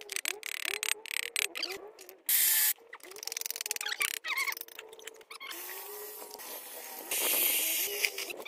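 A steel trowel tapping and scraping on hollow clay bricks and mortar while they are laid: many short sharp taps, a loud scrape about two and a half seconds in and a longer one near the end, with high squeaks throughout.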